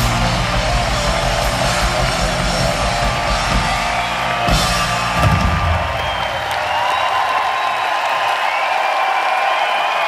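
Live synth-pop band with drums, guitar and keyboard playing through a large hall's PA, with the bass and drums stopping about six seconds in. A crowd cheering and whooping carries on after the band stops.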